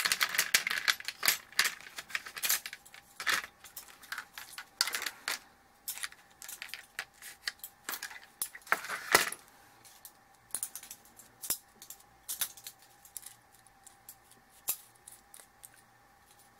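Irregular clicking and clattering of small hard objects being handled, busy for the first nine seconds or so and then thinning to occasional clicks. A faint steady high whine runs underneath.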